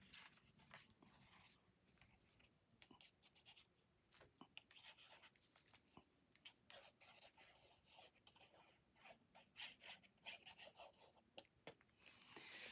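Faint scratching and rustling of paper: the tip of a liquid glue bottle being rubbed over the back of a cardstock panel as the panel is handled, in many short irregular strokes.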